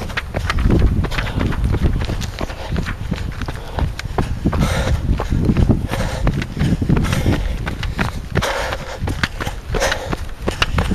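Running footsteps on a dirt trail, a regular series of footfalls over a steady low rumble from a jolting handheld camera.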